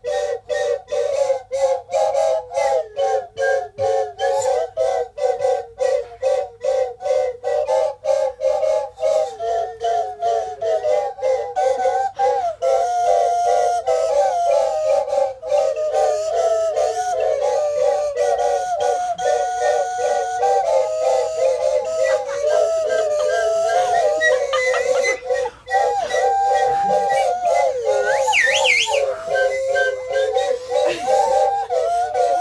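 A group of toy plastic slide whistles playing together in parts, a slightly wavering chord of whistle tones. For the first dozen seconds they play short repeated notes, about two to three a second; after that the notes are held and step up and down in pitch, with a quick up-and-down glide near the end.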